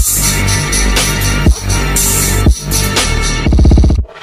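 Electronic music track with heavy bass and sharp drum hits, ending in a fast stuttering roll in the last half second that cuts off abruptly.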